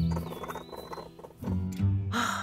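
Cartoon-style baby raccoon squeaks added as a sound effect, over background music holding low notes.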